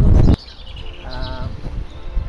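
Wind buffeting the microphone, which drops away suddenly a moment in, leaving a quieter outdoor background with a short bird call about a second in.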